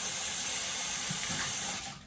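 A bathroom sink tap running, a steady hiss of water that shuts off near the end.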